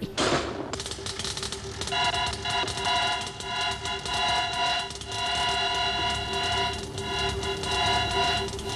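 Electronic science-fiction machine sound effect: dense rapid crackling, joined about two seconds in by a steady chord of high electronic tones over a lower hum.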